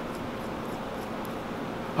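Steady background hiss with a few faint, light ticks: a steel prevailing torque nut is being spun by hand onto a bolt's threads.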